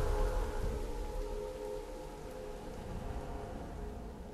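Steady rush of water pouring down, with a sustained, held chord of orchestral score fading beneath it.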